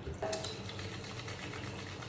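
Tap water running steadily into a bathroom sink while wet hands work a lump of black soap.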